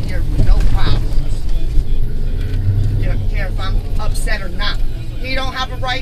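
Low rumble of a Dodge Charger police car's engine and road noise heard inside the cabin as it drives, swelling briefly about halfway through. Indistinct talking comes in over it from about two seconds in and again near the end.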